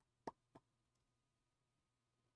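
Near silence broken by two faint short clicks about a quarter second apart near the start, the first louder.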